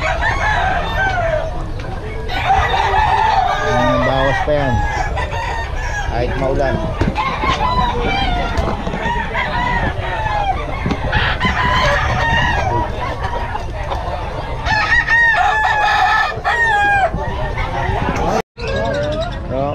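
Several gamefowl roosters crowing and clucking over one another without a break, with a run of clear, strong crows near the end.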